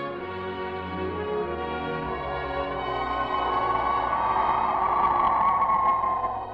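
Orchestral music with brass holding sustained chords, swelling to a loud crescendo near the end.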